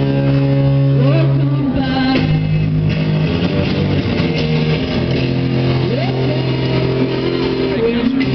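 Live rock band playing, with guitar holding long, steady chords over a low bass note. Two rising swoops in pitch come about a second in and about six seconds in.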